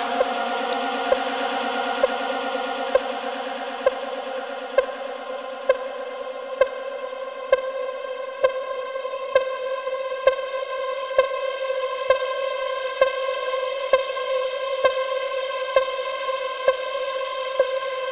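Melodic techno track with no vocal: a held synthesizer chord sounds steadily, with a short sharp tick a little under once a second.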